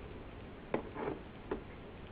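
Oil sizzling steadily in a frying pan on the hob, with three short clacks about three-quarters of a second to a second and a half in.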